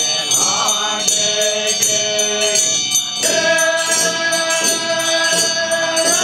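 Tibetan Buddhist monks chanting together to regular strokes of hand-held frame drums. About three seconds in, the chant settles onto one long held note.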